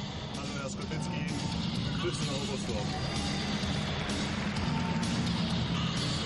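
Arena background music playing over a steady murmur of crowd and room noise, with faint talk from people close by.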